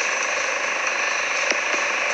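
Steady hiss of background noise with no speech, and a faint click about one and a half seconds in.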